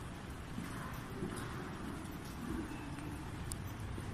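Steady low background rumble of a large building lobby, with a faint sharp click about three and a half seconds in.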